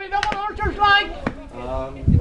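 Men's voices shouting and calling out in raised, high-pitched cries across a football pitch, with a few sharp clicks among them.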